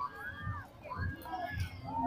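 Background voices of a crowd with children's calls, and a few low thuds.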